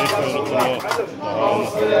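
A man's voice chanting in Algerian diwan (Gnawa) ritual song. About three-quarters of the way in, the steady held notes of the singing and guembri come back in.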